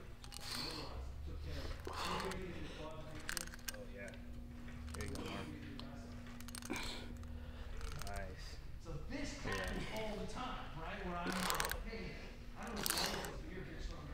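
Indistinct talking throughout, with a few sharp clicks and knocks from the cable machine as a single-arm cable raise is worked.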